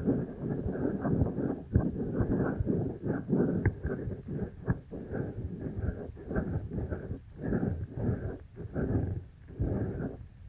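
Hands cupping and rubbing over the silicone ears of a binaural microphone: muffled, low swells that come and go about twice a second, with a couple of short clicks near the middle.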